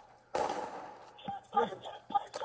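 A single gunshot about a third of a second in, its report ringing out and fading over about half a second, picked up by a police body camera's microphone during an exchange of fire.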